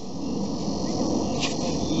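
Insects droning steadily in a high pitch over a low outdoor noise, with one short sharp sound about one and a half seconds in.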